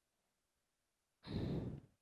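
A man sighing: one breathy exhale a little over a second in, lasting about half a second.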